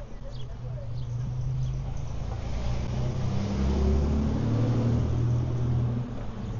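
A motor vehicle driving past on the street, its engine growing louder to a peak about four to five seconds in, then dropping off at the end.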